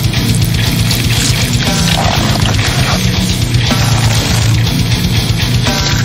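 Slamming brutal death metal: heavily distorted, down-tuned guitar over rapid, evenly spaced bass-drum hits.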